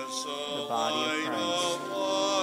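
A hymn being sung: a voice singing over long sustained instrumental chords.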